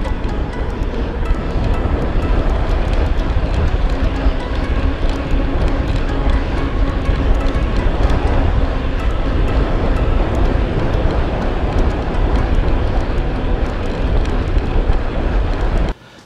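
Wind buffeting a handlebar-mounted action camera's microphone, with tyre noise, as a mountain bike is ridden along a paved road. No creak comes from the freshly installed press-fit bottom bracket.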